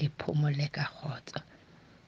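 A person's voice speaking for about the first second, then a short pause with only faint background hiss.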